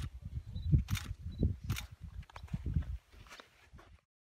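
Irregular low rumbling and bumping on the microphone of a handheld phone filming outdoors, with a few brief rustles. It fades away about three seconds in.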